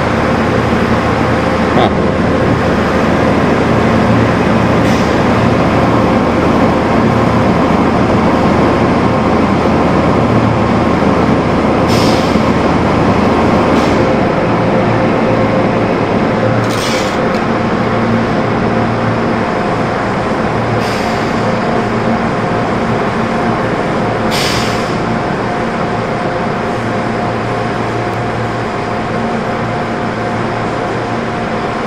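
Brush-type automatic car wash running around a vehicle: a dense, steady wash of water spray and cloth brushes over the body on top of a machinery hum. In the second half there are four short hisses, about four seconds apart.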